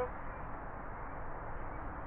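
Steady background hiss with no distinct sounds in it.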